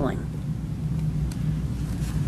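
Steady low hum of room background noise during a pause in speech, with a faint click about a second in.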